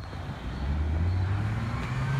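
A car engine pulling hard up the road, its low exhaust note rising steadily as the car accelerates toward the camera.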